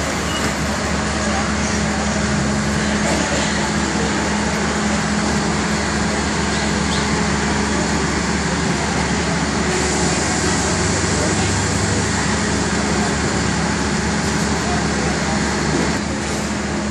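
Steady drone of a standing Thai passenger train's diesel engine idling, with a constant low hum and no change in pace, and voices on the platform mixed in.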